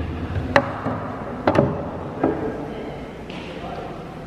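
Antlers knocking against a hard table top as they are handled and set down: several sharp knocks in the first two and a half seconds.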